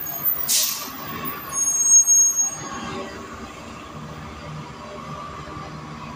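Gillig BRT Plus transit bus with a Cummins Westport ISL G natural-gas engine moving off past the camera: a short, sharp burst of air hiss from its air system about half a second in, then engine and drivetrain noise that is loudest around two seconds in and settles to a steady running sound as the bus pulls away.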